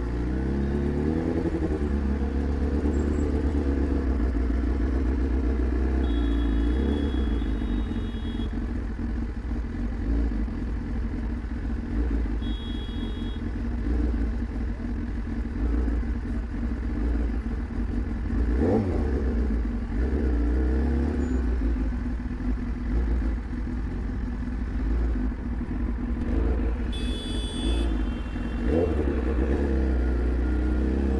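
A superbike's inline-four engine runs at low revs at walking pace in traffic, with brief rises in revs at the start, about two-thirds of the way through and near the end.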